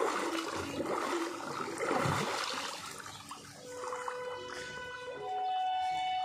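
Water sloshing and splashing in a small garden pool as a person moves through it, over held musical tones that grow stronger in the second half.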